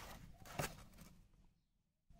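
Faint handling sounds of a multimeter and its test leads, with one sharp click about half a second in; the sound then drops out to dead silence near the end.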